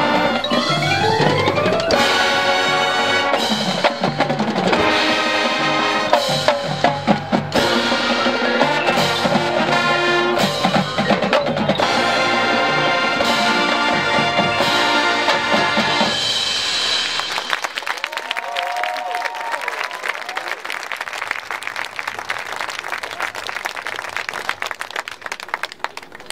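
Marching band playing loud: brass over a drumline of snares and tenor drums, opening with a rising brass glissando and ending about two-thirds of the way through. Then comes a steady wash of applause with a few cheers.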